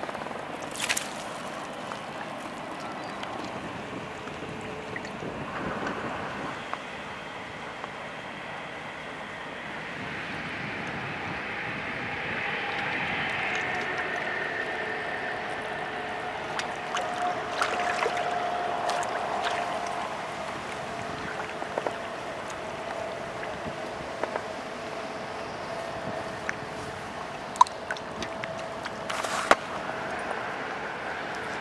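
A boat's engine droning on the river, building from about a third of the way in and loudest through the middle, over the wash of water and wind. A few sharp clicks and knocks come now and then.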